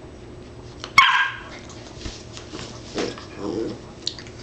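A dog gives one sharp, high-pitched bark about a second in, followed by softer, lower dog vocal sounds near the end.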